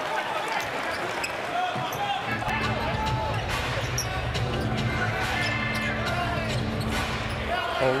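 Live basketball game sound in an arena: a ball dribbled on the hardwood, sneakers squeaking and the crowd murmuring. A steady low droning tone comes in about two and a half seconds in and stops just before the end.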